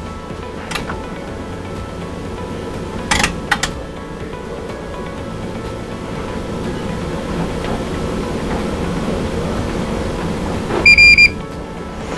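Fluke ESA615 electrical safety analyzer stepping through its automated leakage tests, with a couple of short clicks over a low steady hum. Near the end comes one short high beep as it halts and prompts the operator to power off the device under test.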